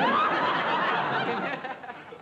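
Studio audience laughing: a loud burst of crowd laughter that starts suddenly and dies away near the end.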